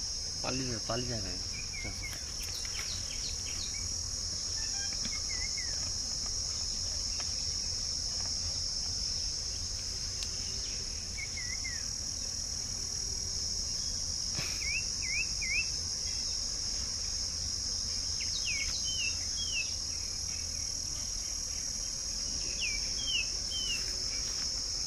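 A steady, high-pitched insect chorus, with birds giving short, downward-slurred chirps now and then, in small groups of two or three.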